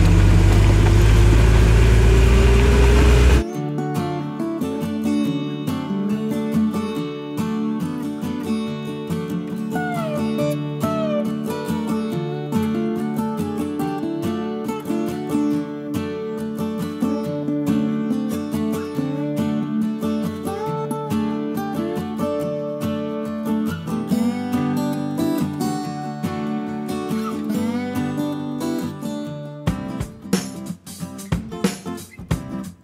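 A 1978 Jeep CJ-7's engine pulling hard, heard from inside the cab: a loud, deep running note that climbs steadily in pitch, cut off suddenly after about three seconds. Then background music with strummed acoustic guitar.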